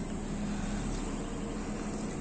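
Outdoor condenser unit of an LG Dual Inverter split air conditioner running: its fan turning with a steady hum and a faint low tone.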